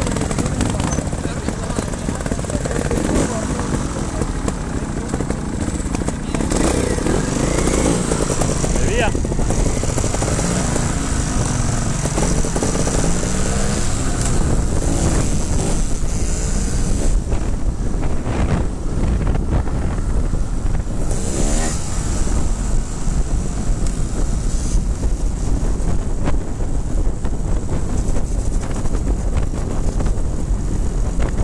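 Trials motorcycle engines running and revving among a group of bikes, several engine notes rising and falling over one another. Later, one trials bike is under way on the road, its engine note going up and down with the throttle and wind on the microphone.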